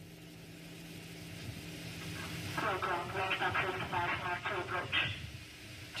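A faint hiss with a steady low hum, slowly growing louder. About halfway through, indistinct voices come in for a couple of seconds, then fade.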